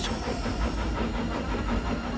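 A steam locomotive running along, a steady low rumble with a hiss.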